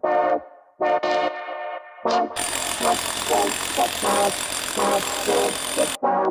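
Brass-and-synth background music with short stabbed notes; about two and a half seconds in, a loud steady power-tool noise with a thin high whine joins under it, a handheld rotary hammer chiselling concrete.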